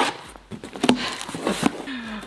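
Packing tape being ripped off a cardboard box and the flaps pulled open: a tearing noise at the start, then a few sharp cardboard knocks and rustles about a second in.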